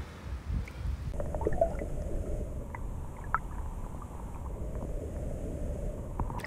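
Flowing river water, a steady low rush. About a second in it turns muffled, as heard from a camera under the water, with a few faint clicks.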